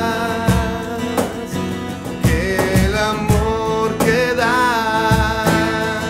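Live acoustic band music: strummed acoustic guitars and electric bass over a steady low drum beat, with a voice holding and sliding between notes.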